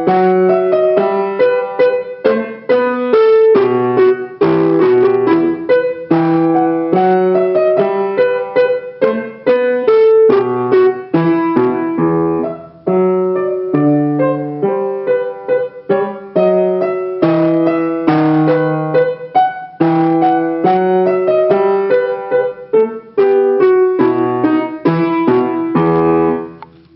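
Solo piano playing a bourrée, a simple Grade 1 baroque dance, in a steady stream of notes. There is a brief break about halfway through, and the last notes die away near the end.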